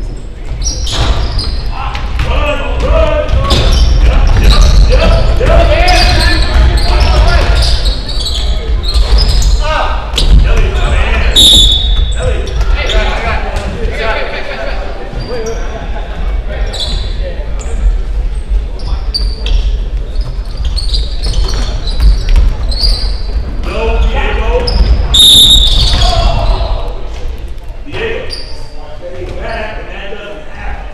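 Basketball game in a gymnasium: a ball bouncing on the hardwood court amid players' movement, with spectators' voices and shouts echoing through the large hall. Two brief shrill high tones come about 11 and 25 seconds in.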